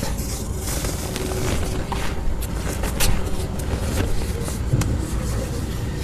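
Dry cement chunks crumbling, with a few scattered sharp cracks, over a steady low rumble.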